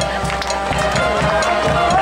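High school marching band playing: brass sustaining chords over a steady beat of marching drums.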